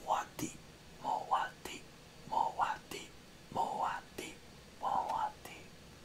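A man whispering in five short phrases, about a second apart.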